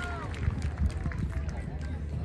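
Open-air stadium ambience between loudspeaker announcements: the echo of the announcer's voice dies away at the start, then faint voices from the crowd over a steady low rumble, with two brief knocks in the first second.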